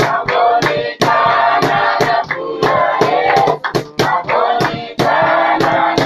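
Church praise group singing in chorus, with sharp percussive beats about two to three times a second keeping time.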